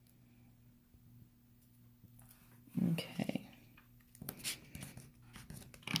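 Quiet handling of copper tape and paper on a tabletop: a short louder crinkle about three seconds in, then a few light clicks and rustles.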